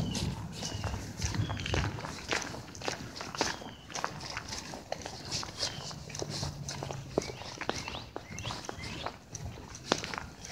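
Footsteps of shoes walking on rough asphalt: a run of scuffs and taps.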